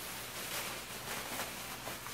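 Thin plastic trash bag rustling and crinkling as it is shaken open and handled.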